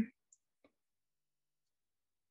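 The end of a spoken word cuts off at the start, followed by two faint clicks within the first second, then silence.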